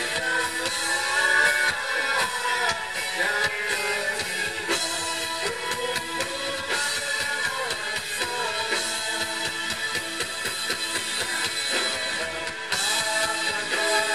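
Live amplified band music: several singers singing together over electric guitar, keyboard and drums.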